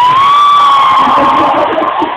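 Concert crowd cheering, with one long high-pitched note from the crowd held for nearly two seconds, rising slightly and then falling.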